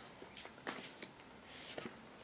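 Faint tarot card handling: a few soft clicks followed by a brief papery rustle near the end.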